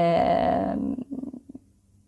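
A woman's voice held for about a second in a drawn-out hesitation sound between sentences, followed by a few faint clicks.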